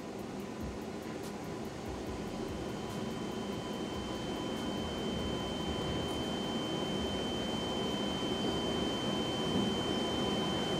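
A steady rushing noise that slowly swells louder, with a thin, steady high tone joining about two and a half seconds in: a tension-building swell laid under a silent slow zoom.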